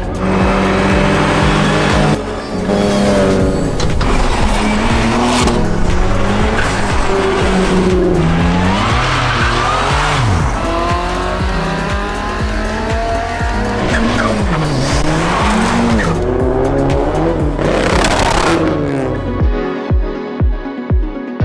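Car engines revving hard, their pitch sweeping up and down several times, mixed over music with a steady beat.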